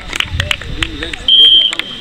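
A referee's whistle, one short steady blast about a second and a half in, the loudest sound, over players and spectators talking and calling out.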